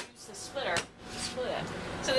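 Brief snatches of a woman's voice in a quiet room. A click at the very start cuts off the steadier background noise heard just before.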